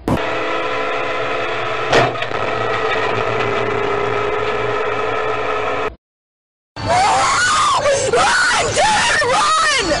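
A train's air horn holds one long steady chord, with a sharp crash about two seconds in. After a brief silent cut, people shout and scream.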